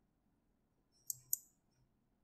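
Two quick, sharp clicks about a quarter second apart, near the middle, like a double-click of a computer mouse button.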